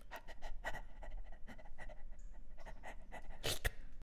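A dog panting in quick, short breaths, with a louder breath near the end.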